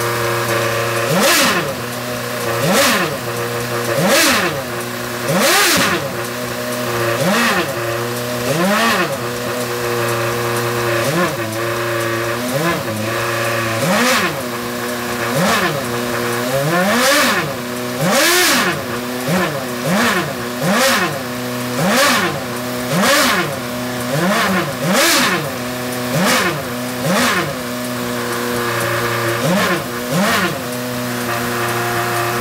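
Lotus Renault R31 Formula One car's Renault V8, stationary, being blipped on the throttle over a steady idle: quick rises and falls in revs about once a second, repeated throughout.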